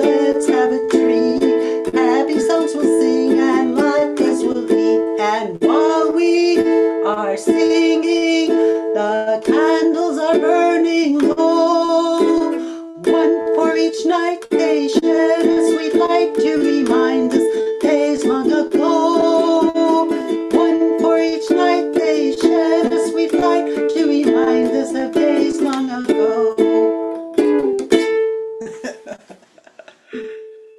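Ukulele strumming a song over steady held notes, the music ending near the end with a last chord that fades out.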